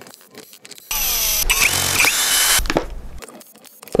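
Cordless screwdriver motor running for under two seconds with a steady high whine, backing out the housing screws of an impact wrench. A few light clicks come before it, and it tails off after.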